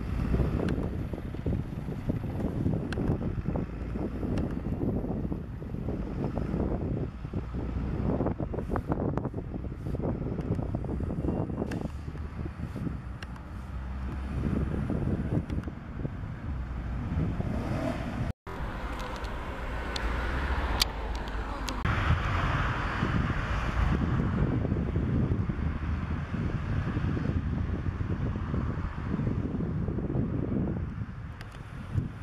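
Jelcz 120M city bus running in street traffic, heard through heavy wind rumble on the microphone. An abrupt cut about two-thirds of the way through is followed by more wind and traffic noise.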